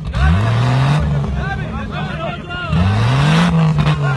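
Engine of a stripped-down off-road Jeep revving hard twice under load on a steep dirt hillclimb, each rev rising in pitch for about a second before easing off.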